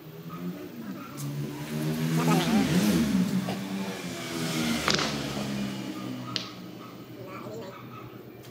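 A vehicle engine passing by, rising and falling in pitch and loudest in the first half. Then a sharp click of a cue striking the ball about five seconds in, and a lighter click of billiard balls colliding a moment later.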